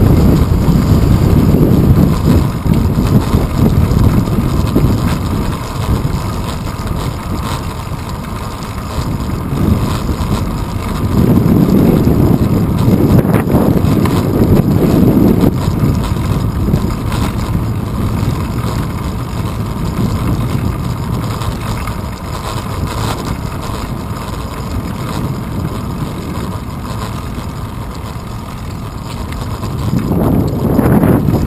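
Wind buffeting the microphone of a handlebar-mounted GoPro on a moving bicycle, together with rolling road noise, as a dense low rumble. It swells loudest in the first few seconds and again from about eleven to fifteen seconds in, and eases in between and toward the end.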